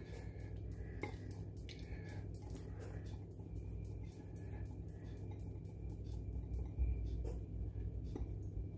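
Quiet room with a steady low hum and a few faint clicks of a glass bowl being handled against a plastic mixing bowl while a yeast starter drains out.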